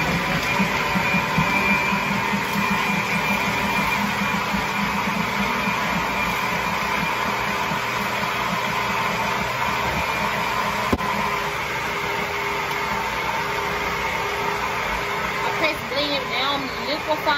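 Countertop blender running steadily, blending milk, spinach and avocado into a smoothie so that it comes out liquid with no lumps. A single sharp click sounds about eleven seconds in.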